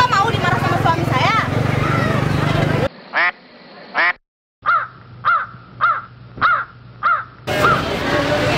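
Voices talking for about three seconds, then a cut to an added sound effect of animal calls: seven short calls that each rise and fall in pitch, two, then after a short gap five more about half a second apart.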